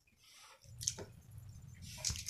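Faint splashing and dripping as a hand works peeled tamarind in a steel bowl of water, with a couple of short clicks about a second in.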